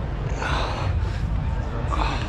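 Hands digging and scraping through packed sand, with a steady low wind rumble on the microphone and a short rustling burst about half a second in.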